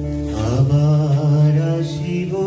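Live musical interlude: a steady sustained drone, joined about half a second in by a voice singing a slow, held, chant-like melody.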